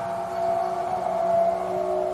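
A steady droning hum with a few held tones, swelling slightly in the middle.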